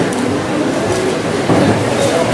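Busy fish-market din: a loud, steady rumble of noise with voices mixed in, a little louder about one and a half seconds in.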